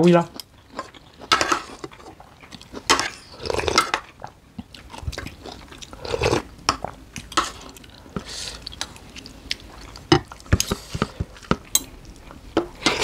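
People chewing food, with spoons and forks clicking and scraping against plates in short irregular taps.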